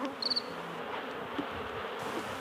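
A night insect chirping: one short, rapidly pulsed high chirp near the start, over a steady background hiss.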